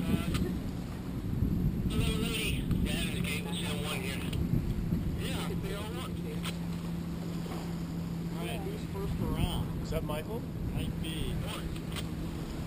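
An engine hums steadily at one pitch over a low rumble of wind on the microphone, with faint, indistinct voices in the background.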